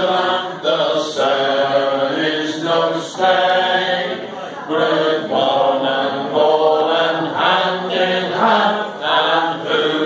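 A group of men singing a Cornish folk song unaccompanied, in sung phrases with short breaks between them.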